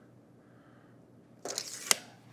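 Tape measure blade retracting, about one and a half seconds in: a short rattle ending in one sharp click as the hook snaps back against the case.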